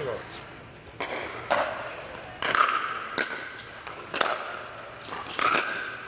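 Pickleball rally: a series of sharp pops from paddles hitting the hard plastic ball and the ball bouncing on the court, about a second apart, echoing in a large indoor hall.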